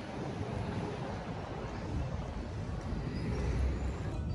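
Steady city street ambience: a low rumble of traffic.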